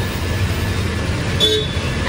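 Steady low rumble of background traffic, with a short vehicle horn toot about one and a half seconds in.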